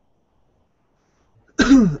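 Near silence while the conference-call line has dropped out, then a man clears his throat loudly about a second and a half in.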